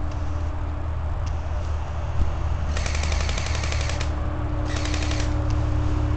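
Airsoft AK-47 rifle firing two rapid full-auto bursts, the first a little over a second long and the second about half a second, a short pause apart.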